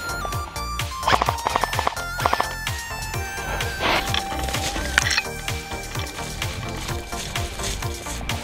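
Background music with a steady, fast bass-drum beat and a synth melody of held notes stepping in pitch.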